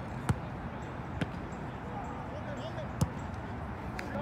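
A soccer ball kicked three times, each a sharp thud, the first and last the loudest; the last a hard strike that sends the ball toward goal.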